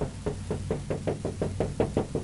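Felt-tip dry-erase marker tapping dots onto a whiteboard in a quick, even run of taps, about six or seven a second.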